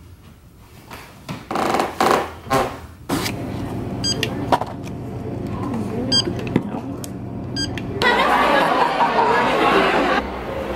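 Store checkout sounds: steady shop noise with three short runs of high electronic beeps from a checkout scanner or register. Near the end comes a loud crowd of people chattering, after a few short loud sounds about two seconds in.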